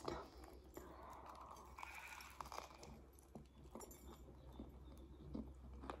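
Faint chewing of a bite of seeded bagel, with scattered small crunches and clicks.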